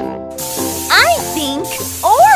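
Cartoon aerosol spray-paint hiss, starting about half a second in and running on, over children's background music with held notes. About a second in, a short voice-like sound rises and falls in pitch.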